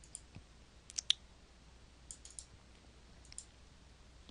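A series of quiet computer mouse clicks, single or in small clusters, the loudest a little over a second in.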